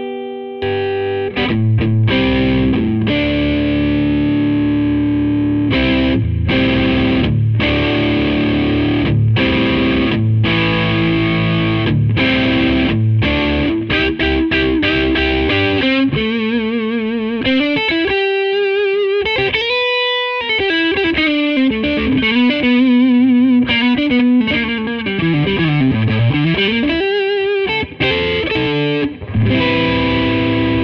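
Gibson Custom Shop Featherweight 1957 Les Paul electric guitar on its neck humbucker, played through an overdriven amplifier, with a beefy tone and extra low-end thwack. It plays chordal riffs broken by short stops, then bluesy single-note lead lines with string bends and wide vibrato, including a deep bend down and back up near the end.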